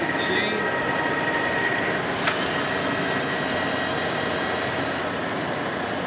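Heavy engine lathe running under power with a steady mechanical drone. A faint whine sounds through the first two seconds and fades after a single sharp click.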